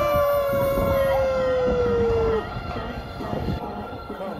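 A female singer's long held note in a K-pop dance track played back for a street dance performance. The note sags slightly in pitch and ends about two and a half seconds in, after which the sound drops to a quieter stretch.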